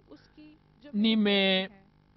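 A single voice speaking briefly in a pause, holding one long, steady-pitched syllable about a second in, with faint speech fragments around it.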